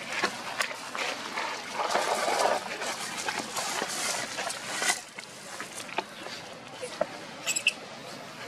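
Dry leaf litter rustling and crackling underfoot as someone walks through it, loudest in the first half, then dying down to scattered crackles. A short high squeak comes near the end.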